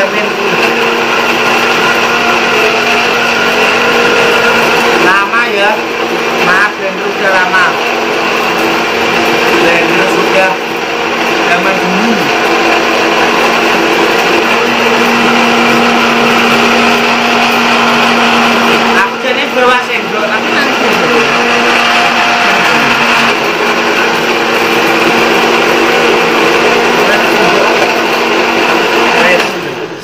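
Electric countertop blender running steadily at full speed, blending guava with ice cubes, milk and water into juice, with a constant motor hum under the whir of the jar. It dips briefly once and cuts off near the end.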